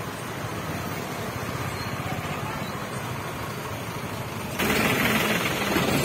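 Heavy truck and bus engines idling in a stalled traffic jam, a steady low rumble. About four and a half seconds in it suddenly grows louder.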